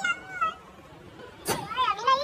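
High-pitched, squeaky, meow-like vocal calls: short ones at the start and a rising-and-falling one near the end, with a sharp click about a second and a half in.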